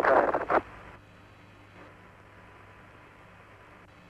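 Apollo 11 lunar-landing air-to-ground radio: an astronaut's voice over the narrow, crackly radio link, breaking off about half a second in, then a steady low hiss and hum of the open radio channel.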